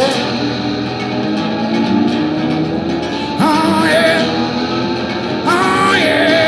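Live band playing an instrumental passage led by strummed acoustic guitar, with gliding, sustained notes rising in about three and a half seconds in and again near the end.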